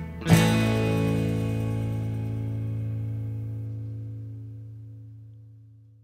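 The song's final chord, strummed on guitar over bass, struck once about a third of a second in and left to ring, slowly dying away near the end.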